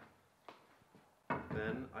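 A few faint, light clicks and knocks of metal sled parts and bar clamps being handled on the plywood table, followed by a man's voice about a second in.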